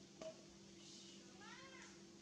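A macaque's short, faint squeaky call about one and a half seconds in, rising then falling in pitch, over a faint steady hum; a small click comes just after the start.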